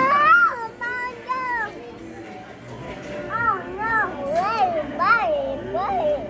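A toddler babbling in a high voice: a rising squeal at the start, two short calls about a second in, then a run of about five short up-and-down calls in the second half.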